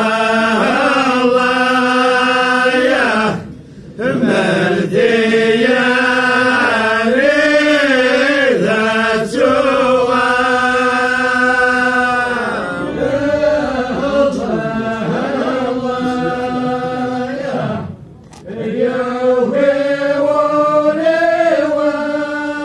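A voice singing slow, drawn-out phrases of long held notes that rise and fall. It pauses briefly for breath about three and a half seconds in and again about eighteen seconds in.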